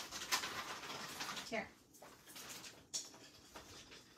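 Pet dogs panting and stirring while being handed treats, with a single sharp click about three seconds in.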